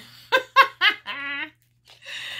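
A woman giggling: three short bursts of laughter in the first second, then a longer drawn-out laughing note, cut off by a brief pause.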